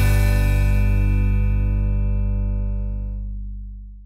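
The song's final chord, a full band chord with guitar, ringing out after the last drum hits. It fades steadily, the upper notes dying away first, and ends in silence right at the close.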